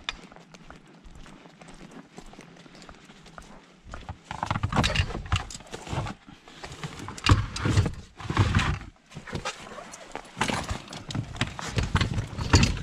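Rescue gear bags being handled and loaded into a car boot: irregular thumps, knocks and rustling, starting about four seconds in after a quieter stretch.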